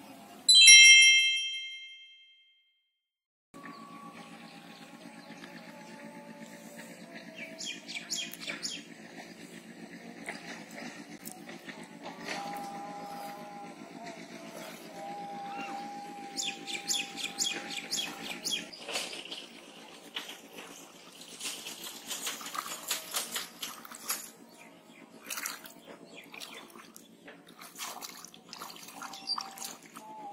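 A loud, bright chime rings about half a second in and dies away over two seconds, then cuts to a second of silence. After that comes a quieter steady hum with clusters of quick high bird chirps, and scattered splashy clicks later on.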